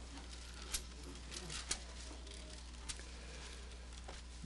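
Bible pages being turned in a church: faint paper rustling and a few soft clicks over a steady low electrical hum.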